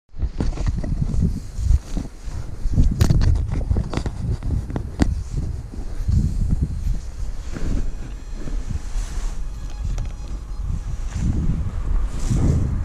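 Wind buffeting the camera microphone: a gusty low rumble, with a few sharp knocks about three to five seconds in.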